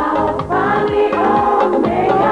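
Ghanaian gospel song in Twi: voices singing together over a regular drum beat.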